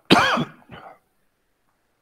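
A person's short throat-clearing cough: one loud burst with a voiced rise and fall in pitch, then a fainter second sound just after.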